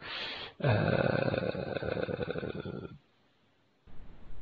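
A man's long, drawn-out hesitation 'euh' in a low, creaky, rattling voice, lasting about two seconds before the audio drops to silence.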